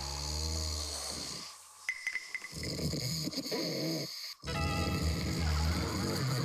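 A man snoring heavily in his sleep, in long breaths through the second half, over background music. A short chime sounds about two seconds in.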